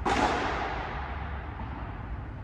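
A padel racket striking the ball once, a sharp crack right at the start that rings out and fades over about a second in the reverberant covered hall.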